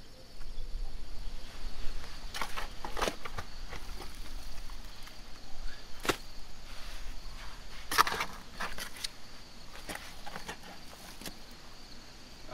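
Long-handled shovel cutting into the soil of a dug pit, a run of uneven scrapes and knocks as the blade goes in, over a steady high drone of insects.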